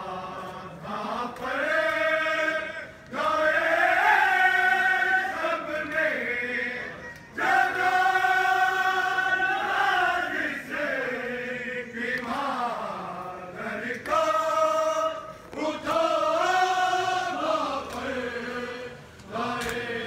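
Men's voices chanting a noha, a Shia lament, in long drawn-out phrases of two to four seconds each with short breaks between.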